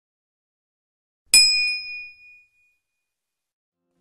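A single bright bell ding, a notification-bell sound effect, struck about a second in and fading away over about a second.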